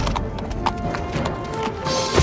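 Horse hoofbeats, a quick run of knocks, under film score music with held tones.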